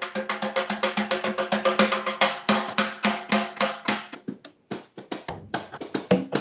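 Drum played with sticks in a fast, even run of about ten strokes a second, each stroke ringing with a steady pitch. The playing thins out and stops briefly about four and a half seconds in, then picks up again near the end.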